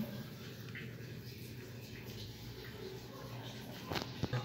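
Quiet room tone with a low steady hum, and faint soft handling sounds as hands press and seal raw bread dough. There is a small click near the end.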